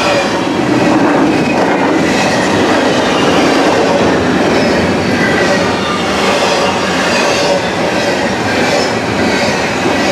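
Freight train's container cars rolling past close by: a loud, steady noise of steel wheels on rail, with faint high squeals from the wheels.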